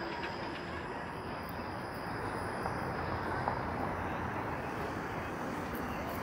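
City street traffic: a TTC Flexity streetcar running along its tracks and a car driving past, a steady traffic noise that grows a little louder about two seconds in.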